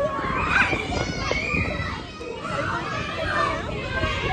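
A group of young children playing, several high voices talking and calling out over one another.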